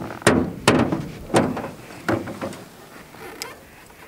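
Irregular sharp knocks and clunks, about seven in four seconds, from fishing gear being handled in a small metal boat while a tangled line is sorted out.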